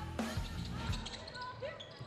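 A basketball bouncing on a hardwood gym floor, two sharp thuds near the start, over a faint bed of background music.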